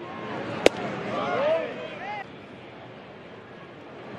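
A single sharp pop of a pitched baseball, a 90 mph sinker, smacking into the catcher's mitt about half a second in, over steady ballpark crowd noise with faint voices.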